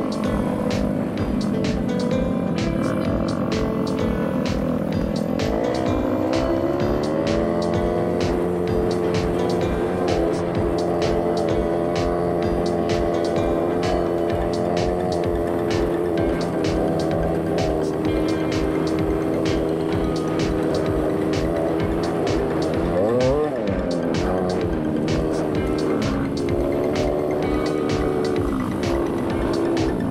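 Snowmobile engine running at a steady pace, its pitch rising as it picks up speed a few seconds in and rising and falling briefly about three-quarters of the way through. Music with a steady beat plays over it.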